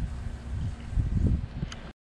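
Wind buffeting the microphone in uneven low rumbling gusts, over a faint steady hum. It cuts off abruptly to silence near the end.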